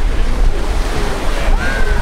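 Surf washing onto a beach, with wind buffeting the microphone in a steady low rumble.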